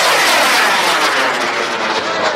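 Model rocket's solid-fuel motor burning as the rocket climbs away: a loud, steady rush of noise that slowly dulls toward the end.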